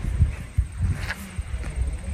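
Wind rumbling on the microphone, with a few soft low thumps.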